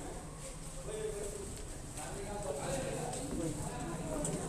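Indistinct chatter of people's voices over a low steady rumble, with a few soft clacks.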